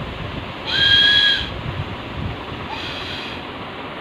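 Toy flute blown in two short, steady single notes, shrill and whistle-like: a loud one about a second in and a fainter one near the end.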